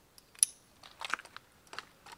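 Metal chain dog leash being clipped to a collar: a sharp metallic click with a brief ring about half a second in, then a cluster of small clinks and rattles around a second in.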